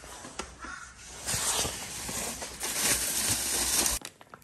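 A crow cawing once, early on. From about a second in, a loud steady rustling noise comes in over it.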